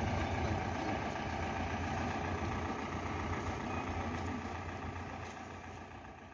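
A vehicle engine idling steadily with a low hum, fading out near the end.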